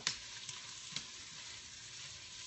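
Chopped onions frying in a hot pan with a steady sizzle, stirred with a spatula that gives three light knocks against the pan about half a second apart in the first second.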